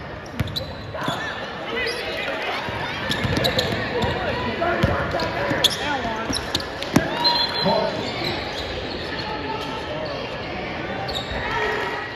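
Live sound of a basketball game in a gymnasium: a basketball bouncing on the hardwood floor with sharp knocks, under a steady din of shouting players and crowd voices echoing in the hall. A brief high-pitched tone sounds about seven seconds in.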